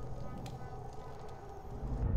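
Low rumbling film-soundtrack ambience under a faint, sustained music bed, with a soft click about half a second in.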